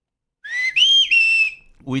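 A loud, high whistle of three notes lasting a little over a second: a short note that rises, then a higher note, then a slightly lower one that is held and fades out. It is the mystery whistle that keeps sounding in the studio.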